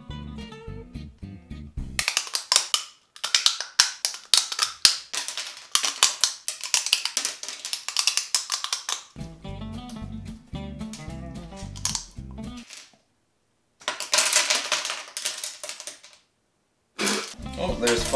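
Crunching of a dry, uncooked lasagna noodle being bitten and chewed: a dense run of sharp cracks, mostly from about two seconds in and again briefly later, over guitar background music.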